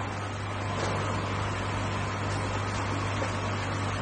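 Steady low hum under an even hiss of background noise, unchanging throughout.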